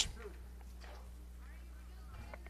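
Quiet ambient sound between pitches: faint distant voices over a steady low hum.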